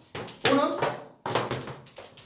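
Flamenco dancer's shoes striking the floor in a kick-and-stamp step: two sharp stamps about three-quarters of a second apart, with a short vocal sound between them.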